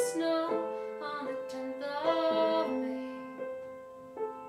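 Upright piano playing slow chords of a ballad, each chord struck and left to ring, growing quieter toward the end.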